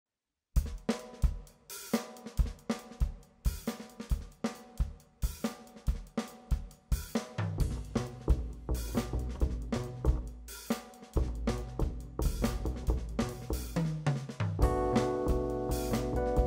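Jazz drum kit playing a steady groove intro on hi-hat, snare rimshots, cymbals and bass drum, starting about half a second in. A double bass joins with low walking notes about halfway through, and keyboard chords come in near the end.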